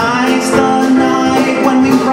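A male singer holding a long sustained note in a show tune, with live band accompaniment.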